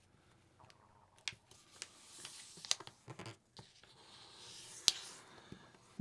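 A sheet of paper being folded in half and creased by hand: faint rustling and sliding of paper with a few sharp clicks, the loudest near the end.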